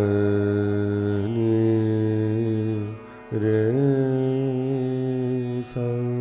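A male voice singing the pakad, the identifying phrase of Raag Ahir Bhairav (ga ma re sa, dha ni re sa), in Hindustani classical style. It comes in two long-held phrases with a short breath break about halfway through.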